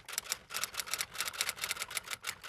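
Typing sound effect: a quick, even run of typewriter-style key clicks, several a second, laid under on-screen text typing itself out.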